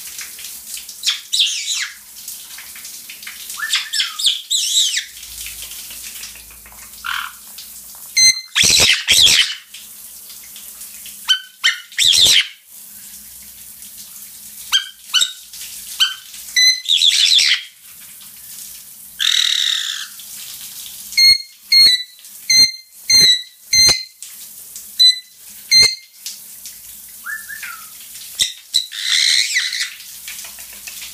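Black-headed caiques calling excitedly. Short sharp high calls mix with longer screechy whistles, and a run of about six clipped calls comes evenly spaced through the middle.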